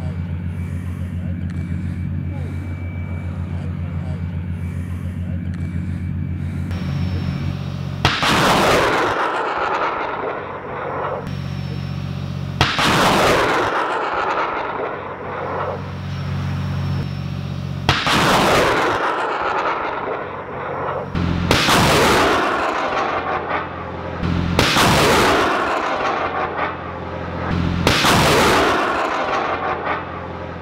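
BM-30 Smerch 300 mm multiple rocket launchers firing rockets one after another. There are six launches, each a sudden blast followed by a rushing roar that fades over two to three seconds. A steady low drone runs underneath.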